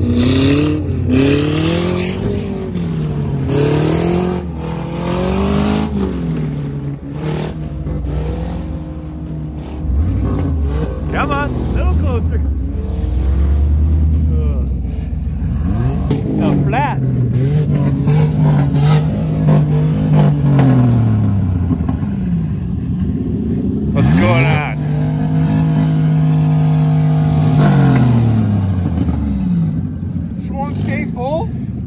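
Car engine revved hard over and over, its pitch climbing and falling repeatedly and held at high revs for a few seconds at a time, as the car is thrashed around a muddy field.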